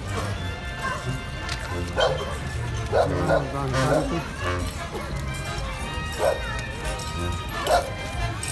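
Music from a street procession mixed with crowd voices, and a dog barking several times.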